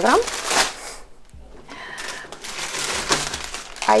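Thin plastic packs of minced meat crinkling and rustling as they are handled and laid on a table, with a brief pause about a second in.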